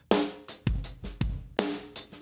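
Recorded drum kit heard solo through a heavily crushed parallel compression bus, with kick, snare and cymbal hits about two a second. Each hit has a sharp attack and a long held ring, the compressor's short release making the kit pump.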